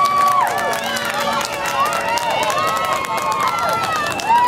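Several high-pitched voices of spectators and players shouting and calling across a soccer field, overlapping, with long drawn-out calls.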